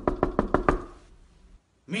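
Rapid knocking on a door, a quick run of knocks lasting under a second that then stops.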